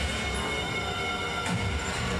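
The routine's soundtrack playing over the hall's speakers: a train sound effect, a dense low rumble with steady high squealing tones, like wheels screeching on rails.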